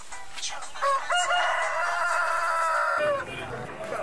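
A rooster crowing once: one long call of about two seconds with a short rising start, beginning about a second in.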